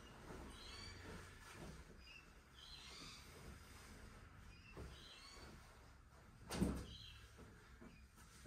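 A flannel overshirt being pulled off, with quiet cloth rustling, and one soft thump a little before the end. Faint bird chirps come through several times.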